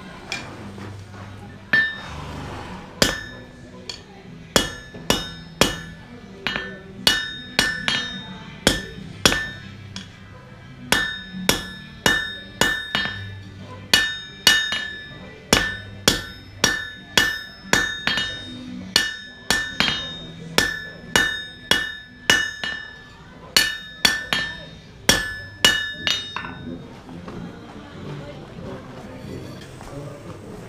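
Hand hammer striking hot carbon steel on an anvil, about two blows a second with a few short pauses, each blow leaving a bright metallic ring from the anvil; the blacksmith is forging a finial on the end of a knife's tang so it can later be threaded for a pommel.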